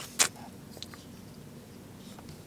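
A single sharp click about a quarter-second in, then a couple of faint ticks: handling noise of folding knives being put aside and picked up.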